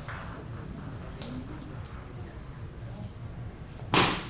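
Quiet hall ambience with faint murmuring. Right at the end comes one sharp, loud click of a table tennis ball being struck as a point begins.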